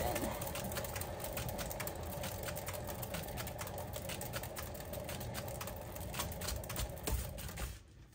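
Paint-pouring spinner turning with a canvas on it, making a steady rattling whir of rapid clicks as it spins, which stops shortly before the end as the spin comes to rest.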